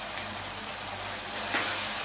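Shredded cabbage, carrot and beef sizzling steadily as they stir-fry in a wok over a gas flame, with a brief louder rustle about one and a half seconds in.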